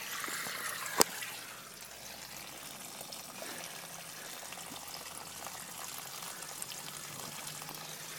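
Water pouring and trickling steadily from a garden hose flushing oil sludge out of a car engine's open cylinder head, the water running out from under the car onto grass. One sharp click about a second in.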